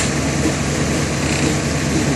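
Diesel engine of a concrete pump truck running steadily under load as it pumps concrete through the hose.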